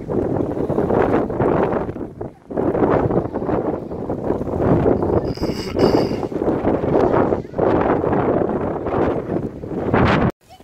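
Blizzard wind buffeting the microphone: a loud, gusty rumble that drops away briefly twice.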